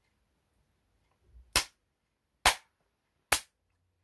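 Three slow, single hand claps, evenly spaced about a second apart, each a sharp crack.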